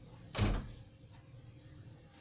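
A single short, dull thump about half a second in, over a faint steady low hum.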